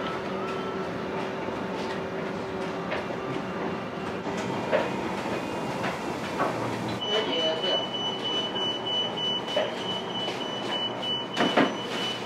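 Steady mechanical hum and hiss with scattered clatter. A high steady tone comes in about seven seconds in, and there are two loud knocks near the end.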